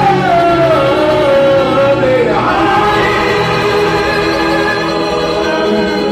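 Men singing a slow Hungarian Romani hallgató live with band accompaniment. A long sung note glides downward over the first two seconds, then a new, higher phrase begins about halfway through over steady held accompaniment.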